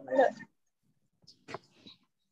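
A short pitched vocal sound, a voice or an animal's whine, fading out within the first half second, then near silence broken only by a faint click.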